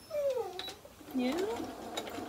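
A dog whining: a single falling whimper in the first half second.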